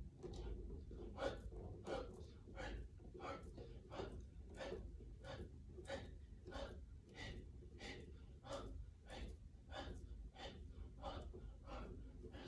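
A man breathing hard in short, sharp breaths as he does push-ups, about three breaths every two seconds in a steady rhythm.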